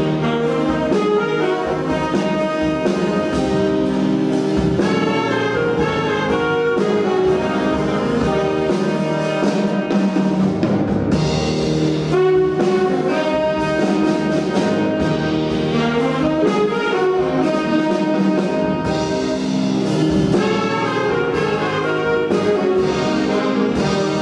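Jazz big band playing live, with the trumpet, trombone and saxophone sections carrying full sustained chords over the rhythm section.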